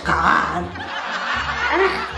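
A person sobbing, a theatrical crying outburst without words, over soft background music.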